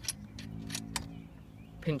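A few light metallic clicks as a small steel shackle and its screw pin are turned and tightened by hand, over a steady low hum.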